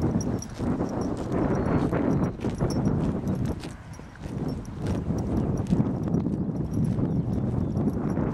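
Hoofbeats of a pony cantering on grass, coming roughly twice a second, over a low rumble of wind on the microphone.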